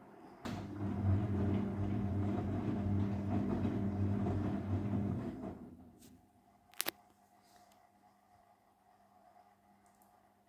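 Castor CX342 front-loading washing machine in its 70° main wash: the motor hums as the drum tumbles the wet, sudsy laundry for about five seconds, then stops and the drum rests. A single short click comes about seven seconds in.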